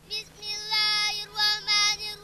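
A girl's voice chanting Quran recitation in long, held melodic notes with short breaks between phrases, carried through a microphone and loudspeaker.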